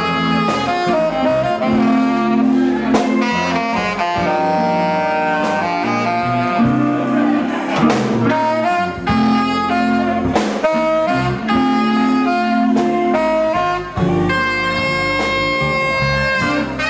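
Saxophone playing a melodic lead line over a live blues band, with drum hits keeping the beat.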